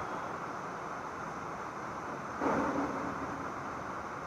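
Steady background room noise, an even hiss with no speech. A brief louder sound comes about two and a half seconds in.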